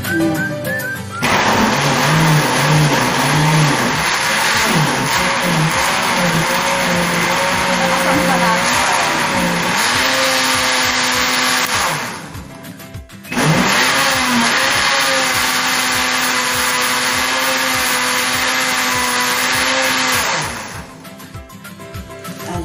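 Electric countertop blender running at full speed, pureeing pineapple chunks with water and sugar into juice. It runs for about ten seconds, stops for about a second, then runs about seven seconds more and stops near the end.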